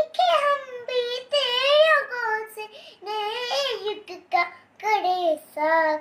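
A little girl singing solo, unaccompanied, in short phrases with gliding pitch and brief breaks between them.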